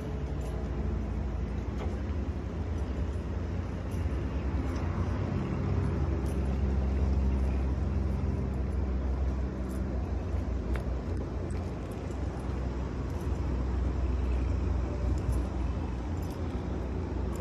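Low outdoor rumble with a steady low hum, a little louder in the middle, typical of urban background noise.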